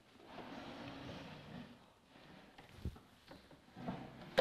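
The action of an 1837 Erard grand piano being drawn out of its case: a faint wooden sliding rustle for about a second and a half, then a single knock near three seconds and a few light taps.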